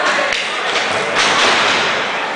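A thud of a body hitting the wrestling ring about a third of a second in, followed by a louder, noisy rush of sound from the hall near the end.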